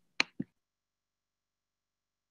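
Two short, sharp clicks about a fifth of a second apart over a video-call microphone, then the line goes silent.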